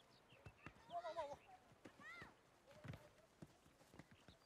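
Faint shouts and calls of boys playing football, with scattered thuds of running feet and kicks on hard ground.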